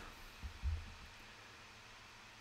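Quiet room tone: a faint steady hiss, with two soft low thuds about half a second apart early in the first second.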